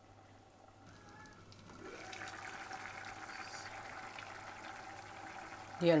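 A pot of curry bubbling at the boil, starting about two seconds in and going on steadily. It has come to the boil, the sign that the curry is done.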